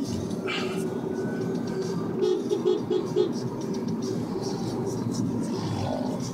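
Steady engine and road noise heard from inside a car moving slowly in traffic.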